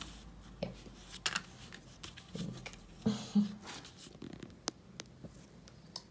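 Sheets of card stock being handled, slid together and pressed flat by hand on a wooden tabletop: soft rustling and scraping with a few sharp taps.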